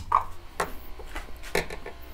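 A few faint clicks and light knocks as a welded 18650 cell is lifted off the spot-welder electrodes and handled, over a low steady hum.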